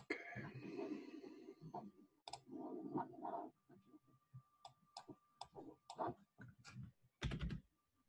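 Computer mouse and keyboard clicks at low level: a softer rustle in the first half, then a run of short, sharp clicks in the second half.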